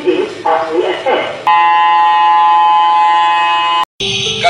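Electronic buzzer sounding one loud, steady tone for a little over two seconds, starting about a second and a half in and cutting off abruptly.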